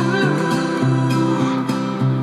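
Acoustic guitar strumming chords in an acoustic pop song, between sung lines.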